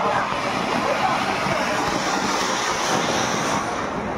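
Ground fountain firework (anar) hissing steadily as it throws up sparks, the hiss growing sharper about halfway through.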